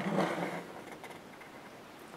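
Quiet room tone in a pause between sentences, with a faint trailing voice sound in the first half second.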